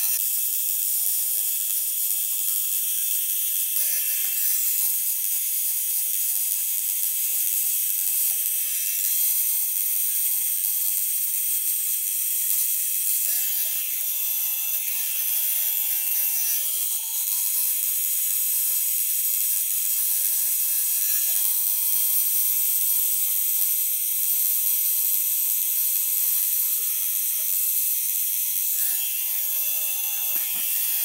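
Electric tattoo machine running steadily as it lines a tattoo outline in black ink on skin.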